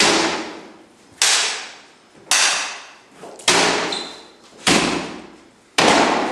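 Sword blows striking a shield in a steady rhythm, six hits a little more than a second apart, each one sharp and ringing out in the room's echo.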